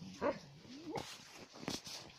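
A shepherd puppy's play noises while being teased: a low growl-like sound that rises in pitch midway, then a short sharp yip near the end.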